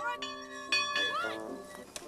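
Bell-like chime notes, struck one after another and ringing on, each note sudden with a long fade.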